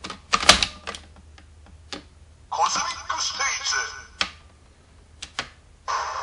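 Plastic clicks of a DX Accel Driver toy belt's handlebar grips being twisted and worked, with a brief electronic voice-and-effect sound from the toy's speaker about two and a half seconds in.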